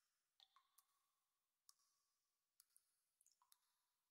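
Near silence, broken by a scattered series of faint, irregular clicks, some with a brief ringing tail.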